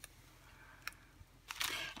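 Mostly quiet handling sounds: a faint click about halfway, then a short rustle of a small plastic bag of beads being picked up near the end.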